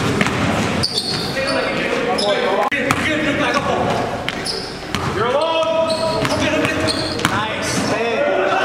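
Basketball bouncing on a gym floor during play, with players' voices calling out, echoing in a large hall.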